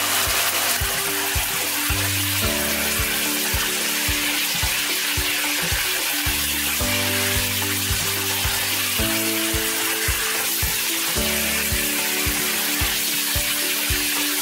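Pork tocino sizzling in a wok as a spatula stirs it through its sauce, under background music with a steady beat and chords that change every few seconds.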